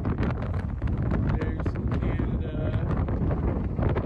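Wind buffeting the microphone on the open deck of a moving ferry: a steady low rumble with frequent crackles.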